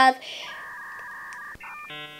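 Electronic telephone-style tones: a steady two-pitch beep lasting over a second, then a few short electronic notes near the end.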